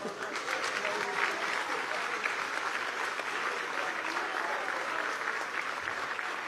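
Steady applause from the deputies in a legislative chamber, a dense even clapping with a few voices faintly mixed in.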